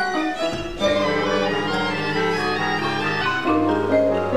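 Orchestral music: bowed strings hold sustained chords over a low held note. The harmony shifts to a new chord about a second in and again near the end.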